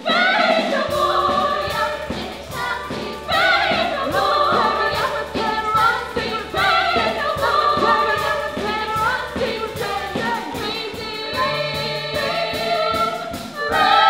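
A girls' choir singing an upbeat gospel-style number in unison, over live keyboard-led band accompaniment with a steady bass line.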